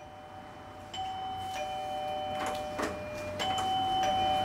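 Electronic two-tone doorbell chiming ding-dong, rung twice: once about a second in and again near the end, each chime's higher note followed by a lower one and held. A couple of light clicks come between the two rings.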